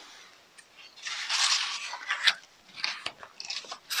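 Paper pages of a picture book being turned and handled: a soft rustle about a second in, then a few crisp crackles and clicks.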